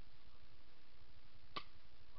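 A single sharp click from an airsoft pistol about a second and a half in, over a steady faint hiss.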